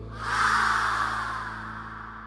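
A person's body plunging into the sea: a sudden rush of splashing water a fraction of a second in, fading over about a second and a half, over the fading last notes of the song.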